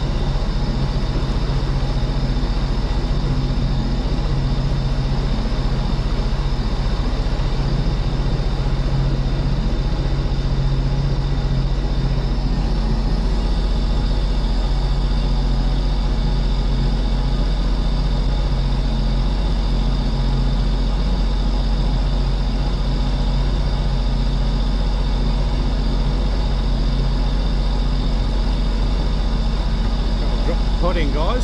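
Sea-Doo Speedster 150 jet boat's supercharged engine running steadily while the boat cruises slowly. It makes a steady low hum with a thin high whine above it.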